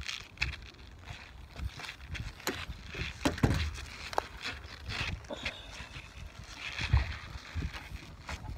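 Knocks, taps and shuffling on wooden dock boards close to the microphone, from slide sandals shifting and a fishing rod being handled and set down, with two heavier thumps, one a little before midway and one near the end.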